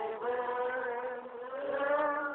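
A group of mourners singing a slow hymn together, with long held notes.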